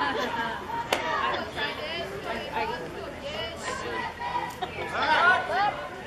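Spectators chattering behind the backstop, with one sharp crack about a second in and one voice rising louder near the end.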